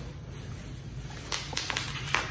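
Foam packing peanuts and plastic bubble wrap rustling as a wrapped bottle is lifted out of a cardboard box, with a few sharp crinkles about a second and a half in.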